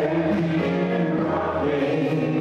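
A church congregation singing a gospel song, led by a woman's voice on a microphone, in long held notes.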